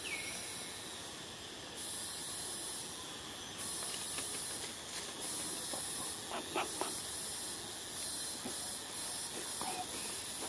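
Steady high-pitched hiss of outdoor forest background noise, with a few faint short squeaks in the middle.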